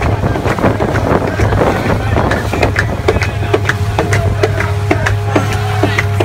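Steady low drone of a boat motor under way, with water rushing along the hull and wind on the microphone. Voices mingle with it in the first half, and music with a regular beat comes in about halfway.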